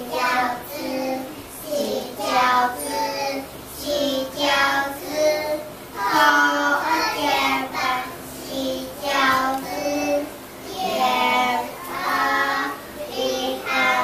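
A young boy singing solo, unaccompanied, in short phrases with held notes and brief pauses between them.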